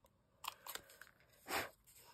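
Hand-held plier-style hole punch biting through cardstock: a few short clicks and crunches, the loudest about a second and a half in.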